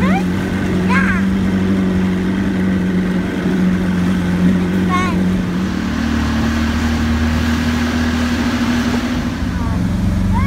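Motorboat engine running steadily at speed, its pitch stepping up about six seconds in as the revs rise, over the rush of wind and water. A few short high-pitched children's calls come near the start, about a second in and about five seconds in.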